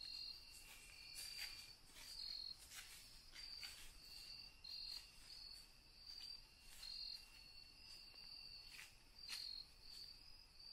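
Faint insects chirping in the woods: short high chirps repeating about once or twice a second over a thinner steady trill, with a few soft ticks here and there.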